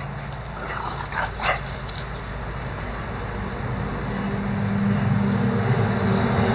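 Two short play barks from one of a pair of dogs, a Boston terrier and a bulldog, wrestling, about a second and a half in. Under them a low steady engine hum grows louder over the second half.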